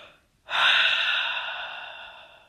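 A person's long, weary sigh: a faint breath in, then a loud breathy exhale starting about half a second in and fading away gradually.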